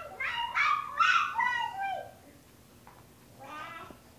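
A toddler's high-pitched squeals: a run of several bending cries in the first two seconds, then a shorter one near the end.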